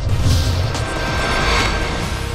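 News-programme title-sequence music with a swelling whoosh sound effect over a deep rumble, building to its loudest about a second and a half in.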